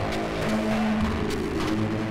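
Live-coded electronic music: sustained low synth tones stepping between pitches, cut by sharp clicky percussive hits.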